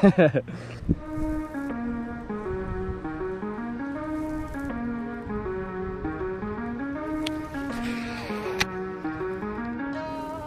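Background music, a melody of held notes stepping up and down, starting about a second in after a short laugh. Near the end there are two short sharp clicks.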